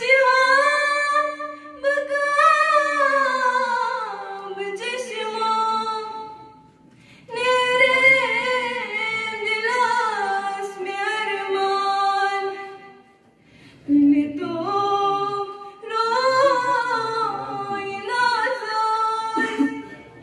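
Unaccompanied female singing of a Kashmiri naat through a microphone, in long drawn-out melodic phrases with two short pauses for breath.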